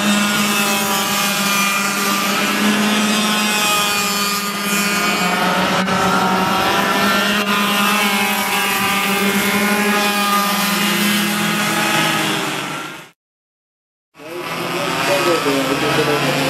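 Small two-stroke Yamaha cadet kart engines running on the track as karts pass: one steady drone, with other engine notes rising and falling over it. The sound cuts out completely for about a second near the end.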